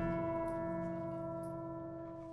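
A single bell-like note from the concert band's percussion rings on and slowly fades away, with a couple of faint clicks.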